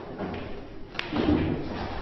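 Pool balls on a billiard table: one sharp click about a second in, followed by a dull thump.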